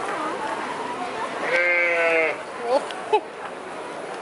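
A sheep bleats once, a wavering call lasting just under a second, about one and a half seconds in.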